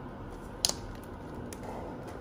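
Clear plastic takeaway container being handled, with one sharp click a little after half a second in and a fainter one later, over a steady low room hum.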